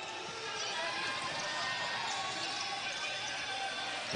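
Steady crowd murmur in a basketball arena, with a basketball bouncing on the hardwood court.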